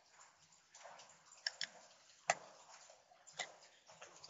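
Faint computer mouse clicks: a few single clicks at irregular spacing, with a quick pair of clicks among them.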